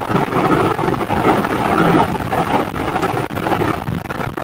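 Loud noise from an open microphone on a video call: a steady, rushing noise with no clear words.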